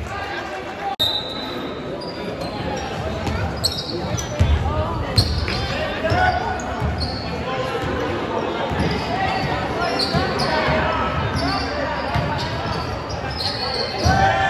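A basketball bouncing on a gym's hardwood floor during play, with short high sneaker squeaks scattered through and players' and onlookers' voices in the hall.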